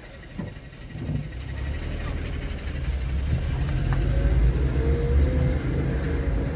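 Car engine and tyre rumble heard from inside the cabin, growing steadily louder as the car gathers speed on a bare, unasphalted road surface, the engine note rising near the end.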